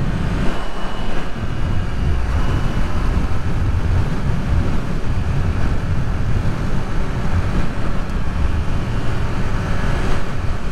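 Wind rushing and buffeting over the microphone at road speed, with the 2022 Kawasaki Z400's parallel-twin engine running steadily underneath.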